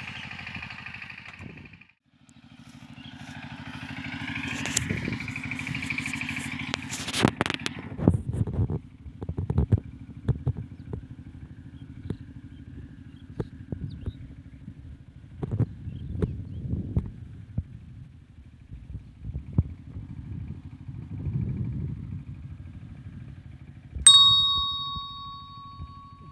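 A low, steady small-engine drone with scattered knocks and clicks. About two seconds before the end comes a sharp, bell-like ding that rings on and fades.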